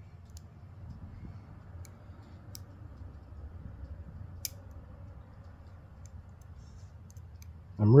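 Sparse, faint clicks of a short hook pick working the pins of a euro-profile lock cylinder held under a tension tool, with one sharper click about four and a half seconds in, over light handling rustle.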